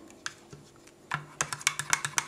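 Plastic spoon stirring and scraping inside a freezer-type slush maker cup: a faint click or two, then from about a second in a fast run of sharp clicks, several a second.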